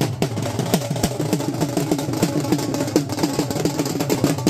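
Dhol drums beaten with sticks in a fast, steady processional rhythm, several strokes a second, each stroke a sharp knock with a short dropping boom.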